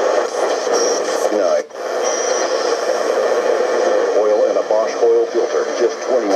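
A Sony ICF-A10W clock radio's AM band being tuned: steady static and hiss with snatches of broadcast voices coming and going, and a brief drop-out about two seconds in.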